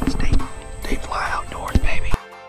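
A man's voice making unclear vocal sounds over background music.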